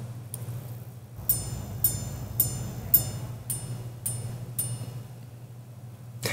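Patek Philippe 5074R minute repeater striking the time on its gongs: seven evenly spaced ringing chimes about half a second apart, starting about a second in after a faint click from the repeater lever.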